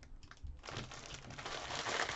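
Plastic packaging crinkling as small bags of diamond painting drills are handled and pulled out, faint at first and building louder toward the end.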